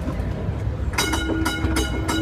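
Street tram running with a low rumble, then about halfway its warning bell is rung rapidly and repeatedly, a signal to clear pedestrians from the track ahead.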